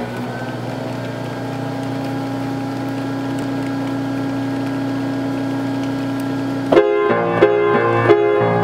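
A 1924 Willis upright player piano's pneumatic action running with a steady drone and air hiss while the roll's blank leader passes the tracker bar. About seven seconds in, the piano begins playing chords from the roll, which are louder than the drone.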